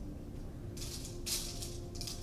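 Light background music: a held tone with a shaker or tambourine-like rhythm.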